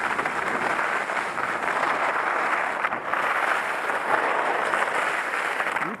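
Skis scraping across hard, icy snow in a steady hiss, with a slight dip about three seconds in.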